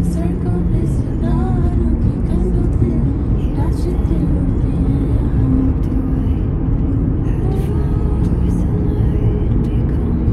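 Steady low rumble of a moving car, heard from inside the cabin, with faint voices underneath.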